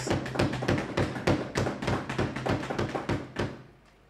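Many members thumping their wooden desks at once in approval, a rapid, irregular patter of thuds that dies away about three and a half seconds in.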